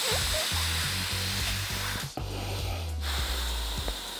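Breath blown hard by mouth through the inflation tube of a hoodie's built-in air pillow, a steady rushing hiss of air, with a short break about two seconds in before the blowing goes on.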